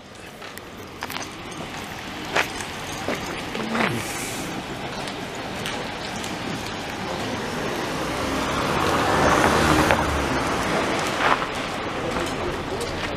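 Street traffic: a car passing close by, its tyre and engine noise swelling to a peak about nine to ten seconds in and then fading. A few sharp clicks sound over it.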